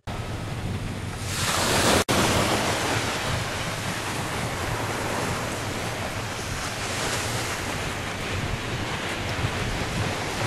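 Small waves breaking on a sandy beach: a steady rush of surf, swelling louder about two seconds in, with a brief dropout just after.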